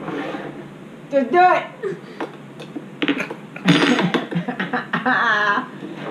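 Family voices around a table: short bursts of laughter and exclamations, with a brief loud outburst about two-thirds of the way in.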